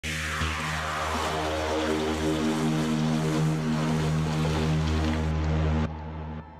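Logo intro music: a whoosh falling in pitch at the start, then a loud, sustained low chord under a rushing noise, stopping suddenly near the end.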